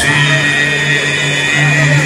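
Live band music holding a sustained chord: a steady low note under several high held notes.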